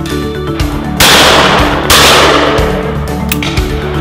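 A shotgun fired twice at clay targets, the two shots about a second apart, each trailing off over most of a second, over background music.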